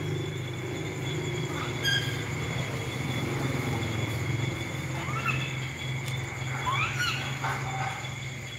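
Night ambience: crickets trilling steadily over a continuous low hum. A few short rising squeaks come about five and seven seconds in.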